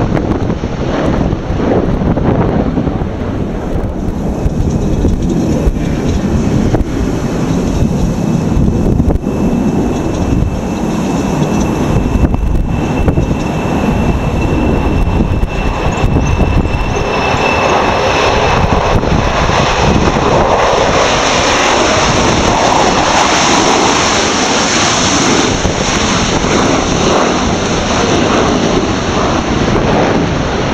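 Jet aircraft engines at high power, a heavy steady rumble with a thin high whine through the first half. From about halfway a louder, fuller roar takes over as the VC10's four rear-mounted Rolls-Royce Conway engines climb out close overhead.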